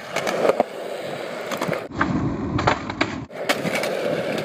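Skateboard wheels rolling on concrete, with several sharp clacks of the board. For a second or so in the middle the rolling turns heavier and lower.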